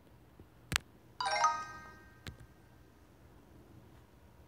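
A sharp tap, then about a second in a bright chime of several tones that rings out and fades within about a second: the learning app's correct-answer sound. A lighter tap follows.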